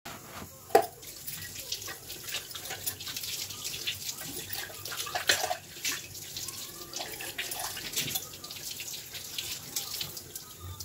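Tap water running into a kitchen sink while stainless-steel bowls are washed, with clinks and clanks of the metal vessels. A sharp clank comes about a second in.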